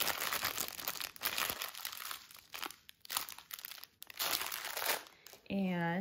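Clear plastic packaging crinkling as it is handled, in irregular bursts that stop and start over several seconds.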